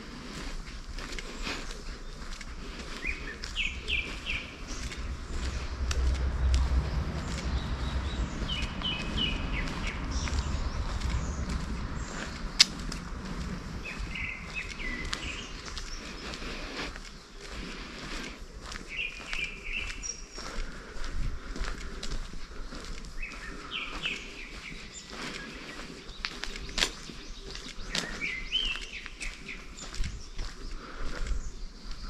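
A songbird repeating the same short chirping phrase about every five seconds, six times in all, over the steady scuff of a walker's footsteps on a paved path. A low rumble, like wind on the microphone, swells for several seconds in the first half, and there is one sharp click near the middle.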